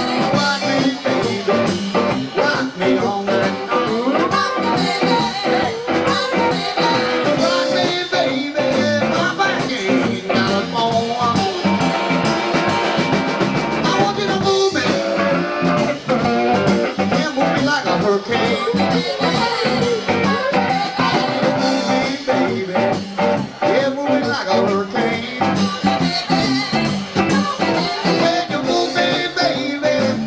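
Live band playing a song with a steady beat: acoustic guitar and drums, with singing.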